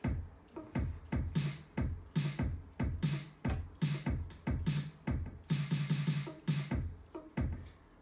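Electronic drum-kit sounds in Logic Pro, triggered by AeroBand PocketDrum air drumsticks and played over studio monitor speakers. A steady beat of about two to three hits a second mixes deep kick thumps, bright snare or cymbal hits and pitched tom-like notes.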